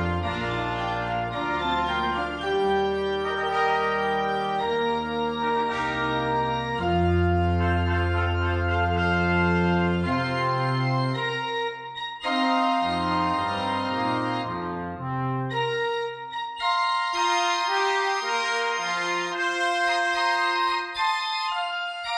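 Organ playing sustained chords over a deep pedal bass. There is a brief break about halfway through, and the bass drops out for the last five seconds or so, leaving only the higher chords.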